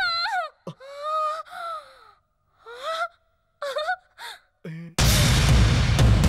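A woman's high-pitched moaning and gasping: short rising and falling cries broken by pauses. About five seconds in, a loud sudden burst of dramatic film music with a drum hit cuts in.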